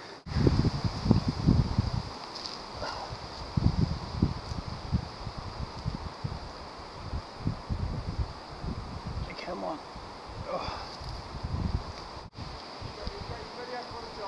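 Irregular low scuffs and rumbles as a climber moves his hands and body against a tree trunk and branches, mixed with wind on the microphone. Faint voices come in a few times.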